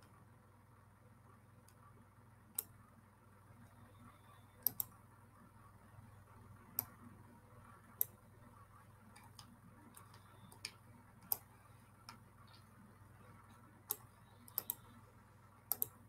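Computer mouse clicking now and then: about a dozen short, sharp clicks at irregular spacing, a couple of them quick doubles, over a faint steady hum.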